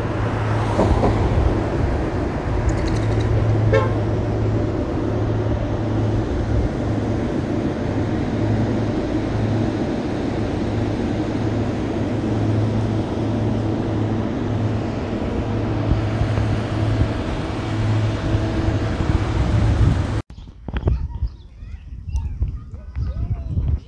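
Car driving along a road heard from inside the cabin: steady engine and tyre rumble. About two seconds before the end it cuts off suddenly, giving way to quieter, patchier sound.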